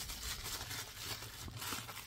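Plastic bubble-wrap bag rustling and crinkling as it is pulled off and unwrapped by hand.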